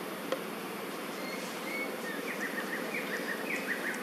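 Outdoor insect buzzing, steady throughout, with a run of short, quickly repeated high chirps joining in from about halfway through.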